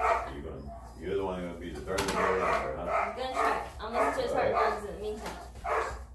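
Three-week-old Rhodesian Ridgeback puppy crying and whining repeatedly, a string of wavering high calls, while being held and handled for an examination.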